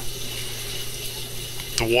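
Steady low hum with an even running-water hiss from a conveyor dish machine whose wash tank is filling.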